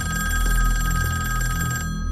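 An old telephone bell ringing in one continuous ring with a fast trill, which cuts off just before the end. A low pulsing bass runs underneath.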